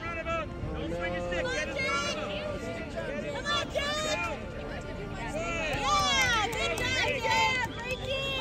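Spectators and coaches shouting encouragement from the sideline, many overlapping high-pitched voices calling out at once, loudest about six seconds in.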